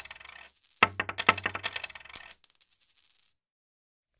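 A coin sound effect: a coin dropping on a hard surface and rattling with a thin metallic ring, heard twice. The second drop comes about a second in, and the rattle dies away about three seconds in.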